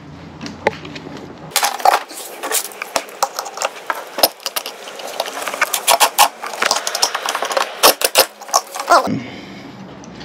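Hand tools working the last screw out of a boat fitting: a long run of irregular sharp metal clicks and scrapes, which stops about a second before the end.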